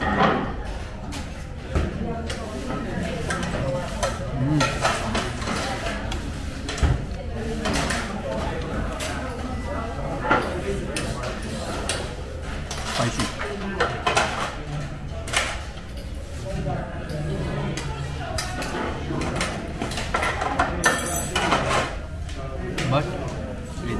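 Busy restaurant ambience: background diners' voices, with scattered short clinks of spoons and cutlery against plates and dishes.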